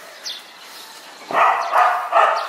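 A dog barking twice in quick succession near the end, after a quieter first second.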